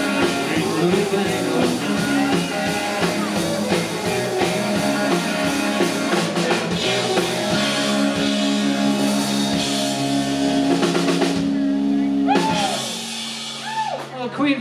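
Live rock band, electric and acoustic guitars, bass guitar and drum kit, playing the final bars of a song. Near the end the drums drop out, leaving held chord notes that fade.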